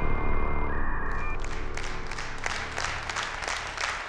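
The show's theme music ends on a held chord that fades out, while studio audience applause comes in about a second in and carries on.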